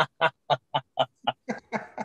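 A man laughing hard in short, evenly spaced bursts, about four a second, trailing off near the end.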